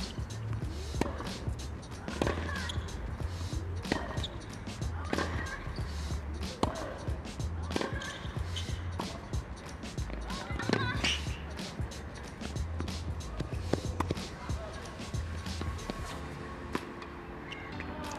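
Tennis rally on a hard court: a ball struck back and forth by racquets, one sharp hit about every one and a half seconds, over a low steady rumble.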